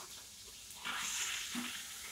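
Pork chops frying in a hot pan, sizzling, the hiss growing louder a little under a second in.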